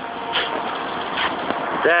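An engine idling steadily.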